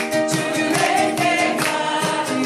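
Ukuleles strummed in a steady rhythm while voices sing a praise song together.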